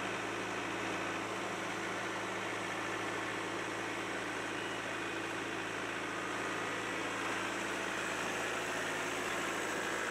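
John Deere compact tractor engine running at a steady, unchanging speed.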